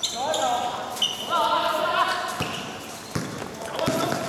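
Basketball bouncing on a hard court during play, with a few sharp thuds in the second half.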